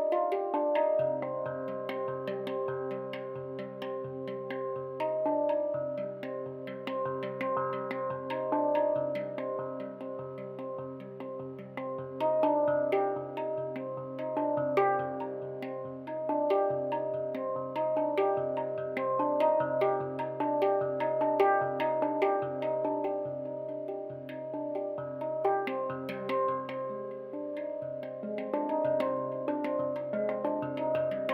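Handpan played with the fingertips: quick patterns of ringing steel notes over a low note struck again and again.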